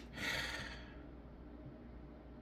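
A person sighs: a single breathy exhale lasting under a second near the start, fading out, followed by faint low room hum.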